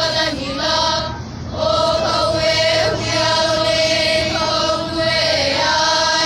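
A group of children singing together in unison, a Hawaiian-language song or chant with long held notes and a brief break for breath about a second in.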